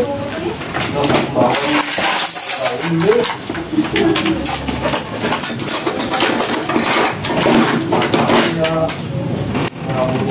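Metal hand tools clinking and clattering as they are rummaged through to find a screwdriver.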